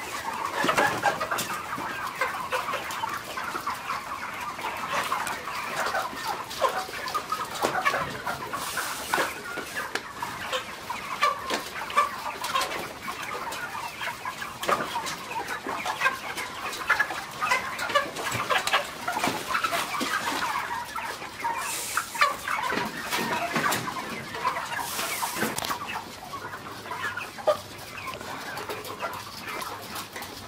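A large flock of Ross 308 broiler chickens, at market size of about six weeks old, clucking and chattering continuously in many overlapping voices. A few short hissing bursts rise over the clucking, about a third of the way in and twice more later on.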